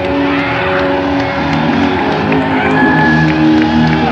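Live rock band playing held, sustained notes, with the audience cheering and whistling over it.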